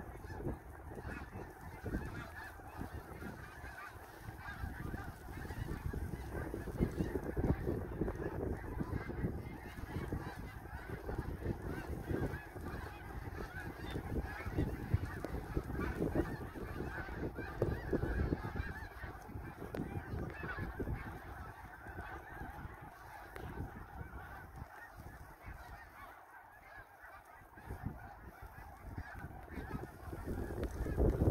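A large flock of snow geese calling overhead, a continuous chorus of many overlapping honks, with wind rumbling on the microphone in gusts.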